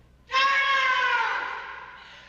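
A woman's long, high-pitched scream. It starts about a third of a second in, slowly drops in pitch and trails off.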